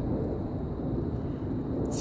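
Wind rumbling on the phone's microphone outdoors, a steady low noise, with a brief click near the end.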